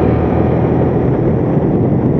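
Motorcycle engine running at a steady cruising speed, with wind noise on the on-board camera's microphone.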